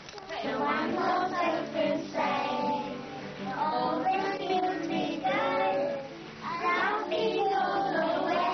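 Young children singing a song together to acoustic guitar accompaniment, in sung phrases with short breaks about three and six seconds in.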